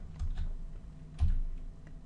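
A few separate keystrokes on a computer keyboard as letters are typed, the loudest a little over a second in.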